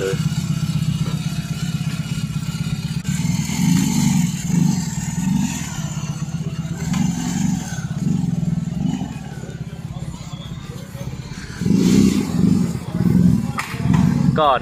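BMW R18 First Edition's 1802 cc boxer twin running through handmade slip-on mufflers, a steady low rumble with several throttle blips, the loudest near the end. It sounds smooth and quiet, not very loud.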